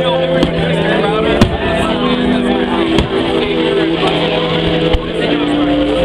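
Aerial fireworks going off in several sharp bangs, the loudest about a second and a half in, over music with sustained held chords and crowd chatter.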